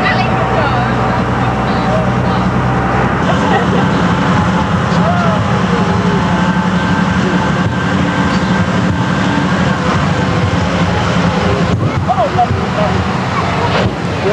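Tractor engine running steadily as it tows a passenger trailer, heard from on the trailer; its note changes about three seconds in. Faint voices in the background.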